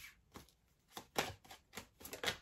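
Tarot cards being shuffled by hand: a quick run of soft snaps and clicks as the cards are slid and tapped against one another.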